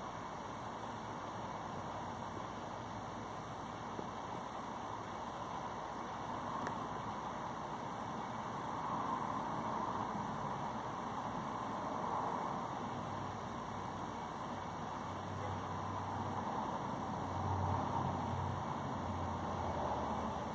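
Steady outdoor background noise with a faint low rumble that swells and eases a few times, with a low hum joining in the second half.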